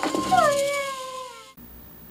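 A dog's single drawn-out howl, falling in pitch, which cuts off suddenly about one and a half seconds in and leaves only faint room tone.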